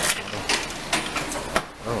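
Metal coin slide of a pressed-penny souvenir machine being pushed in with the coins loaded: a series of sharp mechanical clicks and clacks, the strongest right at the start and about one and a half seconds in.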